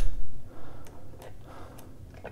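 A knock as a socket ratchet is set onto a bolt, then a few separate clicks from the ratchet as it starts turning the bolt into a PowerBlock dumbbell's grip plate.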